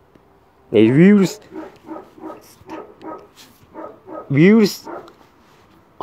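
A man's voice making two loud, drawn-out calls whose pitch rises and falls, about a second in and again near the end, with quieter mumbling between them.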